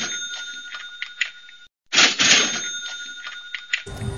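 A cash-register 'ka-ching' sound effect, heard fading out and then played again about two seconds in: a bright jangle with a ringing bell tone that dies away over about a second and a half each time.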